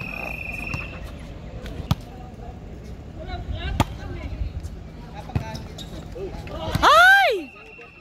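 Volleyball rally: sharp slaps of hands striking the ball, one about two seconds in and a crisper one near four seconds at the serve, then another a little later. About seven seconds in comes the loudest sound, a shout that rises and falls in pitch.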